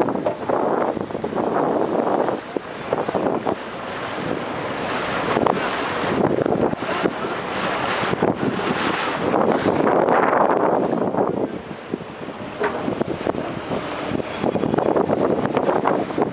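Wind buffeting the microphone of a camera on a moving boat, with water rushing past the hull, rising and falling in gusts.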